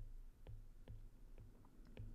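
Faint clicks of a pen stylus touching down on a drawing tablet while words are handwritten, about two a second, over a faint low hum.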